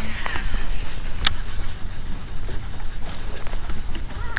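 Wind buffeting the microphone: a loud, low, fluctuating rumble, with one sharp click about a second in.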